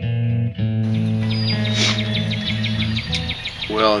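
Guitar music that ends about three seconds in. Outdoor background noise comes up under it about a second in, with a bird giving a quick run of high chirps.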